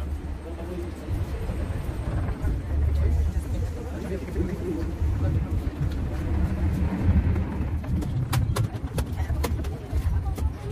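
Steady low rumble of a moving passenger train heard from inside the carriage, with a few sharp clicks near the end.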